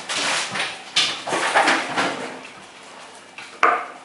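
Bear cubs scuffling and clattering about on a tiled floor, a run of irregular knocks and scrapes with a sharp knock near the end.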